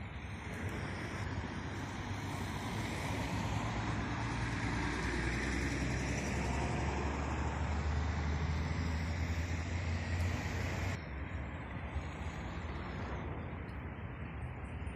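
Road traffic beside a roundabout: a motor vehicle's low engine drone and tyre noise build up over several seconds and hold, then the sound drops suddenly about eleven seconds in, leaving quieter traffic noise.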